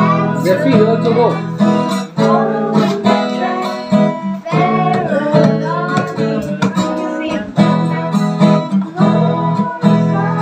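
Acoustic guitar strummed in chords, with a boy singing a song along with it.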